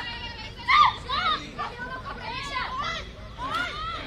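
Several high-pitched young women's voices shouting and cheering in short overlapping calls, the loudest shout about three-quarters of a second in.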